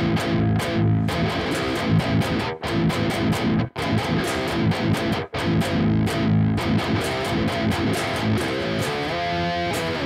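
Electric guitar tuned very low, playing a chugging riff with three brief dead stops, moving to higher single notes near the end.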